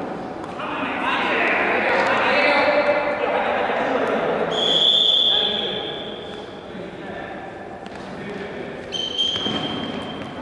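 Futsal match in a large gym hall: players' voices calling out over the ball being played on the hard court. A high, steady tone sounds for about a second about halfway through, and a shorter one near the end.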